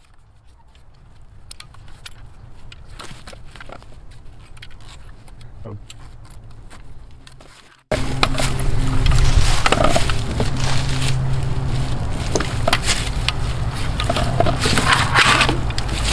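Hand-cranked rope winch being worked to let off the load on a tensioned rope: scattered metallic clicks and rattles from the mechanism. About halfway through, the sound jumps suddenly louder and a steady low hum comes in under the clicking.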